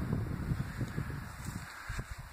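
Low, irregular rumbling of wind buffeting the phone's microphone, with a faint hiss above it.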